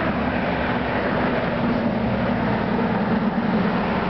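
A vehicle engine running steadily close by: a low hum under a broad wash of noise.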